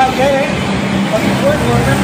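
People talking, with steady vehicle noise in the background.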